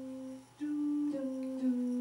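Background music of slow, low held notes with a hummed sound, stepping to a new pitch now and then, with a brief gap about half a second in.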